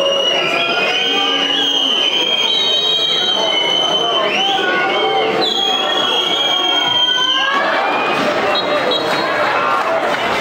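Football crowd at a match: many voices chattering and calling at once, with high drawn-out whistles over the din.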